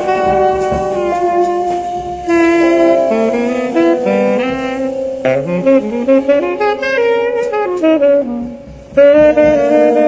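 Live jazz ballad: two saxophones play long held notes in harmony, their lines moving against each other. Near the end they drop back briefly, then come in loudly together.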